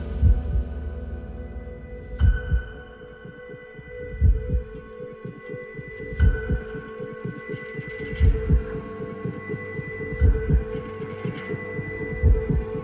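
Film soundtrack: a deep double thump about every two seconds, like a slow heartbeat, over a steady droning hum with high held tones.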